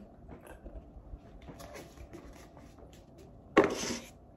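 Drinking from a paper cup: faint sips and small clicks, then a short loud noisy burst near the end.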